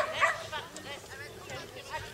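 A dog barking, several short excited barks in quick succession, the loudest right at the start.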